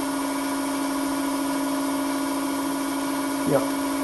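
A 775 brushed DC motor runs at a constant speed with no load, driving a small drilling spindle through a belt, as a steady hum. The spindle turns at about 3,077 rpm, a speed that is pretty well ideal for drilling.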